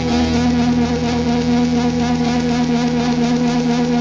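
A rock band's instrumental outro: electric guitars and bass hold one long, steady droning chord, with no drums and no vocals.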